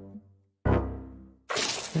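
Cartoon sound effects: a sudden musical hit with a deep bass part that rings and fades, then a loud noisy burst near the end.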